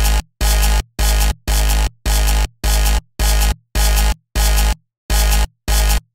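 Dubstep track playing back: rhythmic stabs of heavy sub bass and distorted synth, about two a second with short silent gaps between, one gap a little longer near the end. The mix runs through Ableton's Saturator in Analog Clip mode while its dry/wet amount is turned down from 40% to about 12%.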